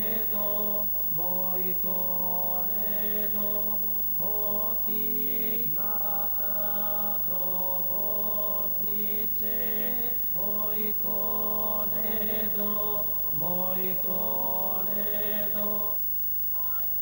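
Voices singing a chant-like song in short phrases that each begin with a rising slide, over a steady low held drone note.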